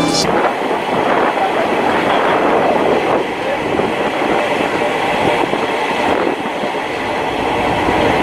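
Passenger train running on the rails, heard from aboard the train as a steady noise without a clear beat.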